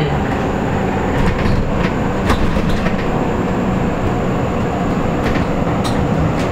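Cabin noise inside a KAMAZ-6282 battery-electric bus on the move: steady road and tyre rumble with a low hum, and a couple of short clicks.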